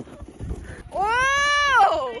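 A woman's long, high-pitched cry, about a second long in the second half, rising and then falling in pitch.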